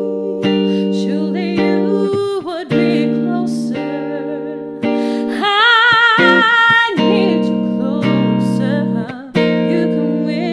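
Semi-hollow electric guitar playing slow, ringing chords under a woman's singing voice. About midway she holds one long note with vibrato.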